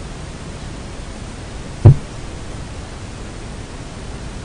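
Steady hiss of background recording noise, broken about two seconds in by a single loud, low thump, such as a knock on the table or microphone.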